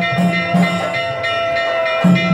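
Temple ritual music: a held wind-instrument note sounds over a quick, even drum beat, with the beat thinning briefly late on.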